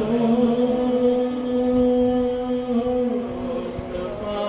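A man singing an Urdu naat unaccompanied, stepping up to one long held note that lasts about three seconds and then tails off near the end.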